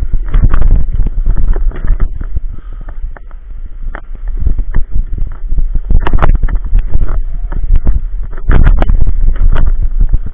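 Inline skate wheels rolling over asphalt and concrete, with wind rumbling on the microphone and scattered sharp clicks and knocks as the skates cross the rough surface; it eases off briefly a few seconds in.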